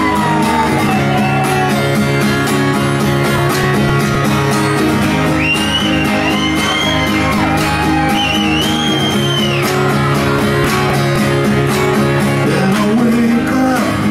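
Live rock band playing the instrumental intro to a song: strummed acoustic guitar, electric guitar and drums at a steady loud level, with a few high sliding lead notes through the middle, before the vocal comes in.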